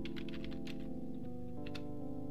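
Computer keyboard typing: a run of quick key clicks as a word is typed, over background music with held chords that change about a second in.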